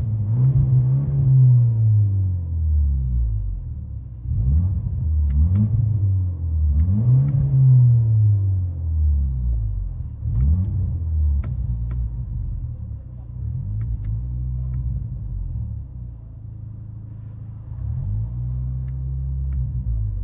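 2024 BMW X1 M35i's 2.0-litre turbocharged four-cylinder, muffler deleted, heard from inside the cabin while parked: revved three times in the first nine seconds, each rev rising and falling in pitch, then a couple of shorter blips before it settles to a steady run.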